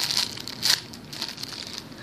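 Thin clear plastic packaging crinkling as a squishy toy sealed inside it is squeezed and handled between the fingers, with a louder crackle less than a second in.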